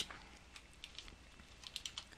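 Faint computer keyboard keystrokes: a scattered handful of light clicks while code is typed and deleted in a text editor.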